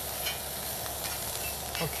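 Baby squid sizzling steadily on a ridged cast-iron griddle pan over a gas burner, charred and nearly cooked through.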